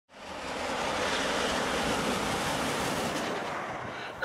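A steady rushing noise, like wind or surf, that swells up in the first half-second and eases off slightly near the end.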